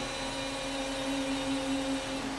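A man's voice holding one long, steady note in Quran recitation.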